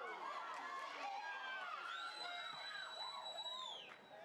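Players shouting on a football pitch, then a referee's whistle blown in one long, steady blast starting about two seconds in and lasting nearly two seconds.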